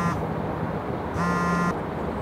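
A mobile phone signalling an incoming call with a steady buzzing tone. It stops just after the start and sounds again for about half a second a little past the one-second mark.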